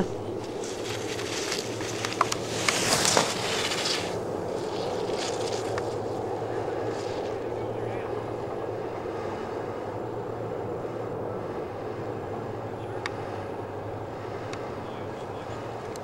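Ski edges scraping over hard-packed snow as a racer carves turns past at close range, a hissing scrape with a few sharp clicks in the first few seconds, over a steady low hum.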